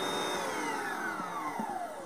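Kitchen Champ mixer motor driving its double whisks through mashed potatoes, a steady whine that is switched off early on and falls steadily in pitch as the motor spins down.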